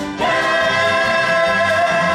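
A stage-musical cast singing in chorus with accompaniment, holding one long note that starts just after a brief break.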